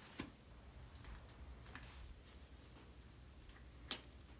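A few light metallic clicks from a horse bridle's bit and fittings as it is held at the horse's mouth, the sharpest just before the end, over a quiet background.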